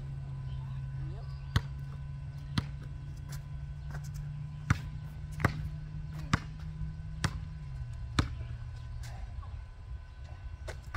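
Basketball dribbled on asphalt: a string of sharp bounces, about one a second.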